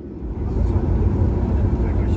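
Boeing 737 MAX 9 jet engines (CFM LEAP-1B) heard from inside the cabin as the plane starts to taxi after pushback. A deep rumble swells up about half a second in, then holds steady and loud.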